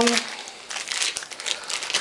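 Plastic wrappers of ration biscuit packets crinkling as they are handled and stacked one on another.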